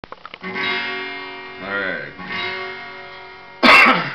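Twelve-string acoustic guitar strummed a few times, each chord left to ring and fade, after a few light clicks at the start. Near the end comes a short, loud, noisy burst, the loudest sound here.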